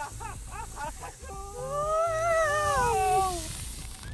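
Excited high-pitched voice cries reacting to a soda-and-Mentos geyser eruption: quick wavering cries at first, then one long drawn-out cry that rises and falls in pitch from about a second and a half in.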